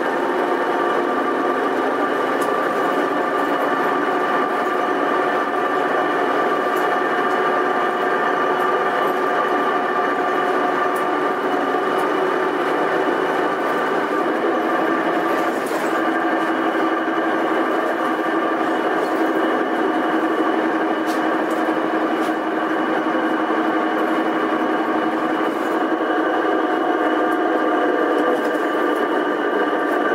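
Karosa B931E city bus running at a steady pace, its engine and drivetrain giving a steady whine made of several held tones over a constant rumble.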